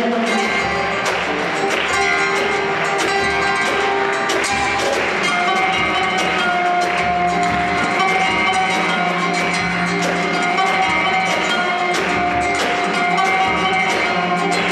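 Live band music played in a hall: guitar with drums keeping a steady beat and sustained melodic notes above.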